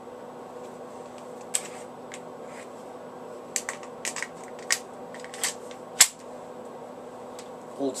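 Taurus PT92 9 mm pistol being handled: a run of small metal clicks and rattles as its magazine is drawn out of the grip and worked back in, ending in one sharp, louder click about six seconds in.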